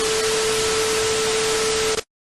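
TV static sound effect: a loud, even hiss with a steady mid-pitched tone beneath it, switching on and off abruptly.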